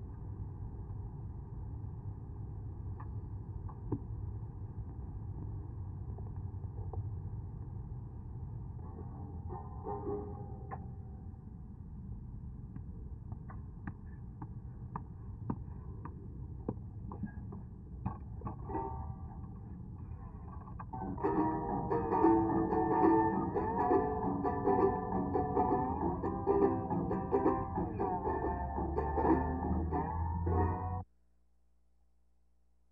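Homemade mechanical one-man band, a hand-cranked wooden cart machine, clicking and clattering over a low rumble. It starts playing plucked-string music about two-thirds of the way in.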